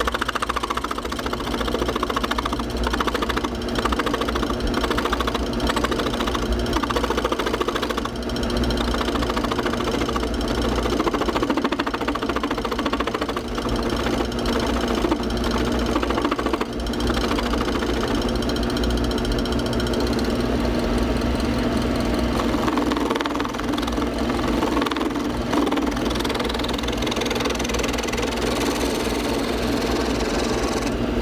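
Small lathe running steadily, its electric motor humming as it spins a wooden workpiece.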